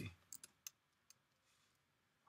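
A few faint clicks of computer keys being typed, bunched in the first second.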